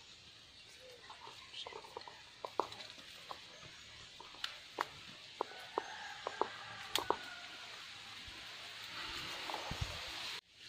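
Scattered light clicks and ticks over a steady high hiss, with faint voices in the background and a louder rustling in the last second or so.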